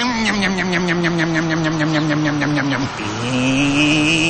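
Motorbike engine sound effect in a radio advert. Its pitch falls slowly over about three seconds, then rises again, and a high steady whine comes in near the end.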